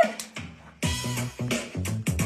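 A hip-hop backing beat with a steady drum pattern and bass line comes in after a short lull of under a second.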